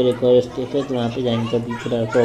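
People talking close by, with children's voices among them, in a continuous chatter.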